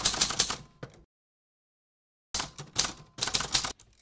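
Typewriter keys clacking in quick runs, striking out a line of text: one run in the first second, a pause, then a second run about two seconds in that stops just before the end.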